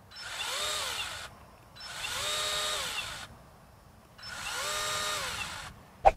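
SKIL 40V brushless 10-inch pole saw run three times with short trigger pulls, the chain spinning free with nothing to cut: each time the motor whines up in pitch, holds for about a second, and winds back down.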